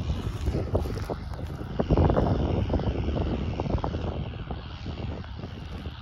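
A distant farm tractor pulling a field cultivator, a low steady engine drone, with wind rumbling on the microphone.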